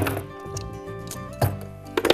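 A few sharp metallic clinks and knocks as copper tubing is pulled off the fittings of a steam pressure reducing valve, separating the pilot from the main valve, over steady background music.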